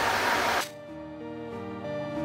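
A steady hiss that cuts off about half a second in, giving way to background music of held, slowly changing notes.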